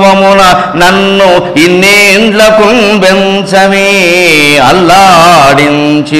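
A man singing a Telugu verse (padyam) in slow melodic recitation, holding long notes with a wavering, ornamented pitch and brief breaks for breath.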